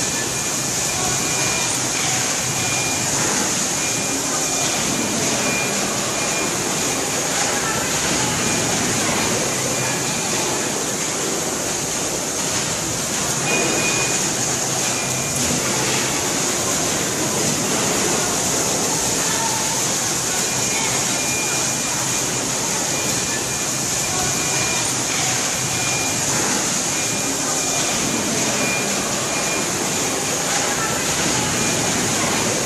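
Large horizontal stator coil winding machine running, its arm spinning copper wire onto the coil form: a steady rushing whir with a thin high whine that comes and goes.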